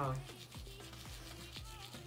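A bamboo toothbrush scrubbing teeth with a faint, rapid rubbing of bristles.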